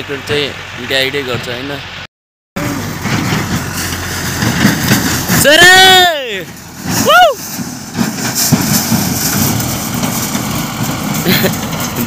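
Tractor engine running as a tractor with a trailer drives along a dirt track, with wind and handling noise on the microphone. About five and a half seconds in a man shouts one long loud call to the driver, rising then falling in pitch, and a shorter call follows about a second later. Brief talking is heard before a cut near the start.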